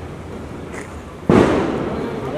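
A single sudden loud bang about two-thirds of the way in, fading quickly with a short echoing tail.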